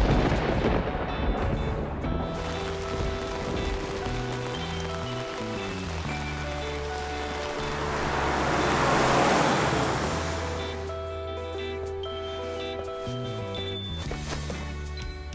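Cartoon background music with steady bass and melody notes, overlaid by a rain sound effect: a burst of noise at the start, then a downpour rush that swells to its loudest about nine seconds in and fades away.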